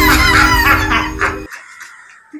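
A rooster crowing, one call of about a second and a half in a few rising and falling parts, over the end of bright music. Both cut off together sharply, leaving only quiet room sound.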